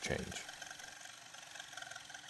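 A spoken word ending at the start, then faint room tone; no sawing is heard.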